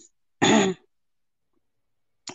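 A person clearing their throat once, a short burst about half a second in.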